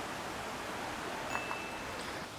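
Steady rush of running water from a mini golf course water feature. A bit past halfway come two light clicks and a brief high ringing tone.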